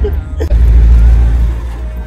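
Loud low rumble of an open-top off-road vehicle on the move, road and wind noise buffeting the microphone; it swells about half a second in and eases off near the end.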